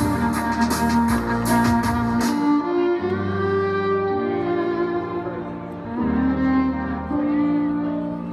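Violin played live through a small amplifier over a backing track with deep bass notes and a steady drumbeat. The drums drop out about two seconds in, leaving long held violin notes over the bass.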